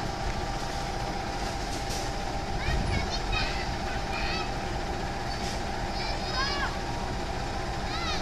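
A KAI CC 206 diesel-electric locomotive creeps toward a signal at low speed. Its engine gives a steady low rumble under a steady high hum, and short high chirps come and go over it.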